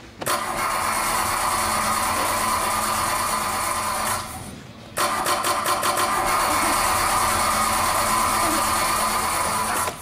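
Car engine starting sound, in two long runs of steady engine noise about four and five seconds long, with a short break about four seconds in.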